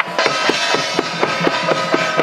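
Temple-procession gong-and-drum troupe: several small handheld brass gongs and a shoulder-slung drum struck together in a fast, steady beat of about four to five strokes a second. The gongs ring on between the strokes.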